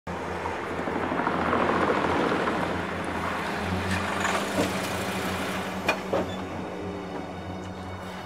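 A Ford sedan rolling down a paved ramp and pulling up, its engine running with tyre noise, loudest a couple of seconds in and easing as it slows. Two sharp clicks come about six seconds in.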